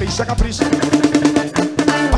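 A live forró band plays an instrumental passage without singing: quick drum and percussion strokes, with a held instrumental note coming in about half a second in.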